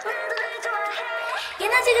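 K-pop song playing, with a woman singing the melody. About a second and a half in, the track gets louder as a bass line comes in.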